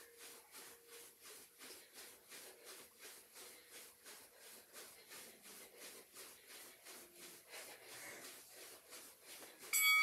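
Soft, regular footfalls of a person jogging in place on carpet, about three a second. Just before the end a workout interval timer sounds a loud, steady electronic beep, marking the end of the 30-second rest interval.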